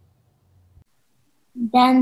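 The last faint low note of a pipe organ dies away and cuts off under a second in, then silence. About a second and a half in, a young narrator's voice begins reading aloud.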